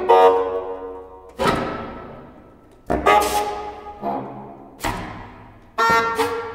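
Contemporary chamber ensemble playing a series of sharp, accented chords, each struck together and left to ring and fade before the next, about six in all at irregular spacing of roughly a second.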